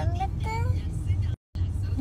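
Steady low rumble of a car, heard from inside the cabin, under a child's short gliding vocal sounds; the sound drops out completely for a moment about a second and a half in.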